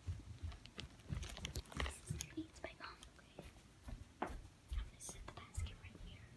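A girl whispering in a small room, with handling noise from the phone she carries: scattered clicks and soft low thumps throughout.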